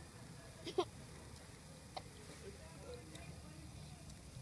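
A young child's short squeal rising in pitch, about a second in, over a low, quiet background hum; a faint click follows a second later.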